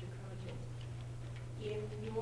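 Faint, distant speech in a room over a steady low electrical hum, with the speech growing louder and closer near the end.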